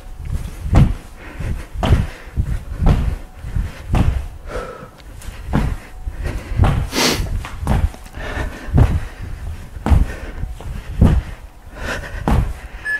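Feet landing on the floor in jumping alternating lunges, a dull thud about once a second, with one hard breath out near the middle.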